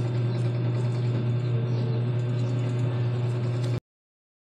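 A steady, loud low hum with a rough rattling edge, like a small motor or fan running, that cuts out suddenly near the end.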